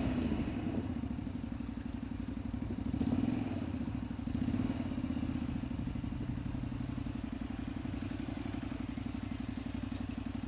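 Honda XL125V Varadero's 125 cc V-twin engine running at low revs as the bike rolls slowly along. It rises briefly about three seconds in and again at about four and a half seconds, then settles into a steady low note.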